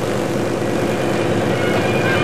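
Steady mechanical running noise of a concrete track-bed paving machine at work, under the hiss of an old tape transfer.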